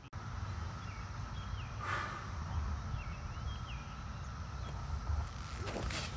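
Open-air ballfield ambience between pitches: a low, uneven rumble with a few faint, short bird chirps, and a brief soft rush of noise about two seconds in.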